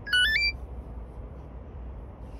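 Smartphone delivery app sounding its barcode-scan tone as a parcel label is read: a short chime of three quick notes stepping upward, about half a second long, right at the start.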